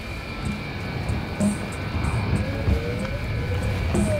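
Advert soundtrack: sustained high droning tones over a low rumbling swell that grows slightly louder, with a tone gliding upward in the second half.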